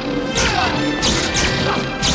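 Sword-fight sound effects: three sharp clashes of glowing light swords striking each other, over dramatic background music.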